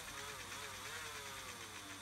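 Cordless drill motor running, spinning the drive shaft of a scale-model metal double-differential truck axle while both axles are disconnected, so only the shaft turns. A faint hum whose pitch wavers up and down.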